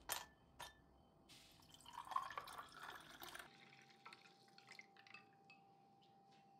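Faint ice cubes clinking into a drinking glass twice, then a chilled melon-seed drink (sübye) poured over the ice for about two seconds, followed by a few faint ticks of the ice settling.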